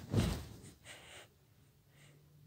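A person's sharp breath close to the microphone, followed by a fainter breath about a second in.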